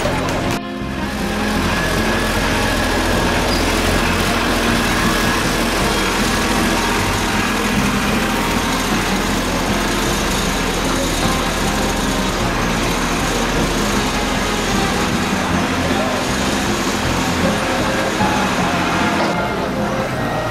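Small motorised utility cart's engine running steadily, with crowd voices and music mixed in.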